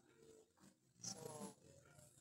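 Near silence in a pause of speech, broken about a second in by one soft, drawn-out spoken "so" from a woman's voice over a video-call connection.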